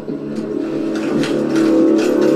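Sustained low drone of several steady held tones from a TV episode's soundtrack.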